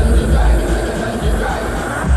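Live concert music over an arena PA: a heavy, pulsing bass beat with crowd voices mixed over it.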